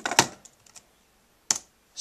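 Keys clicking on an Apple Wireless Keyboard: a loud cluster of keystrokes at the start, a few lighter taps, then a pause and one sharp key click about a second and a half in.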